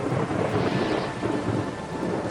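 Heavy rain pouring down with a low rumble of thunder, a film soundtrack's storm.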